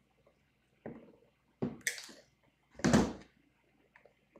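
Handling noises from copper wire and a pair of pliers on a tabletop: a few short separate clicks and knocks, the loudest a knock about three seconds in.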